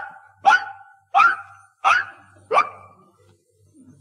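Dog barking five times in a row: short, sharp, evenly spaced barks about two-thirds of a second apart. It is a small fox terrier counting out the number it was given.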